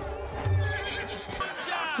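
Horse whinnying: a wavering call that drops in pitch near the end.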